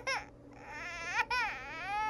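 A baby crying: a few short wails, then a longer rising-and-falling wail starting a little past halfway.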